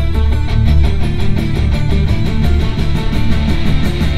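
Rock music playing loud through a 2021 Volvo V90's 19-speaker Bowers & Wilkins audio system, heard inside the car's cabin, with strong, deep bass.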